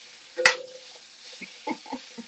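Sliced bell peppers sizzling in a cast iron skillet as a metal slotted spatula stirs them; about half a second in, the spatula strikes the pan with a clank that rings briefly.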